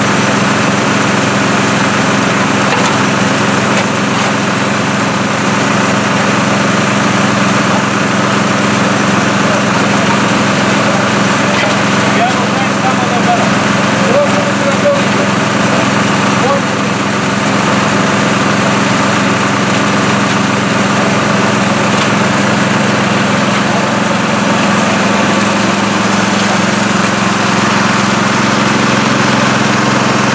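Small petrol engine of a portable water pump running steadily at constant speed, pumping muddy water out of a flooded excavation for a broken water main.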